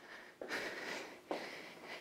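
A woman breathing while exercising: two breaths, the first about half a second in and the second just after a second, each starting suddenly.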